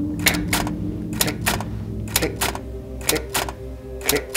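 Typewriter keystrokes, about a dozen sharp clacks at roughly three a second, over a steady low drone.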